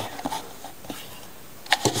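Quiet handling of a Blade Runners Alpha Beast balisong as it is lifted out of its box, with a couple of faint clicks, then two sharp clicks close together near the end as the knife is set down on the table.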